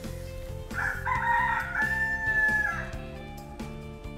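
A rooster crowing once: a single call of about two seconds that starts just under a second in and falls away at its end, heard over steady background music.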